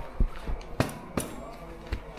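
A few sharp clicks and knocks from the metal buckles and webbing straps of a bungee harness being fastened and pulled tight around the waist.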